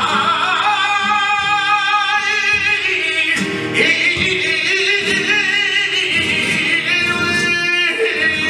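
Male flamenco singer (cantaor) singing long, wavering held notes, accompanied by flamenco guitar.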